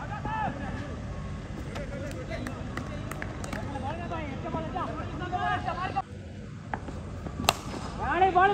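Shouting and chatter of cricket players and spectators at an outdoor ground, with a few sharp knocks and one louder sharp crack near the end.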